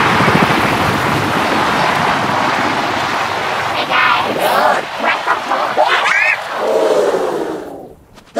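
Crowd cheering, then several separate loud shouts and whoops that rise and fall in pitch over the second half, fading out at the end.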